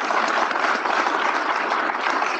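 Audience applauding steadily: many hands clapping together.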